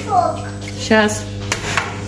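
A metal spoon clinking against a roasting tray as pan juices are scooped over a roast turkey, with short voices in the background and a steady low hum underneath.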